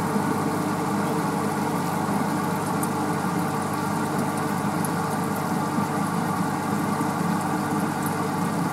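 Steady mechanical hum of running aquarium equipment, one unchanging drone made of several even tones.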